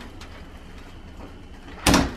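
A front door swinging shut with a single sharp clunk near the end, after a stretch of low steady background noise.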